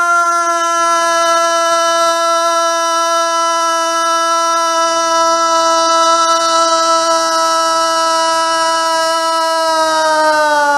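A cartoon dog character screaming: one long, loud scream in a man's voice, held at a single steady pitch without a break for breath.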